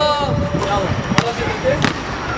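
A basketball being dribbled on an outdoor court, bouncing twice in the second half, about two-thirds of a second apart, with voices calling out at the start.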